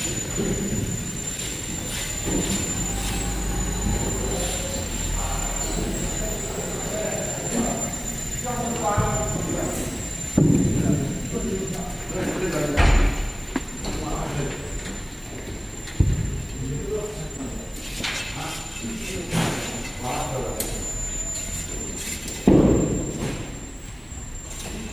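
Wood-processing workshop noise: indistinct voices, a steady high-pitched whine and a low rumble, broken by four heavy thuds, the loudest near the end.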